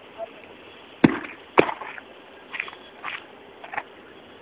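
Heavy granite stone, about 15 kg, slammed down onto paved ground: two sharp impacts about half a second apart, the first the loudest.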